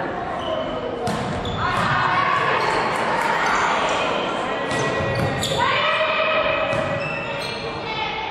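A volleyball rally in a large, echoing sports hall: the ball is struck by hands several times with sharp smacks, and players shout calls to each other.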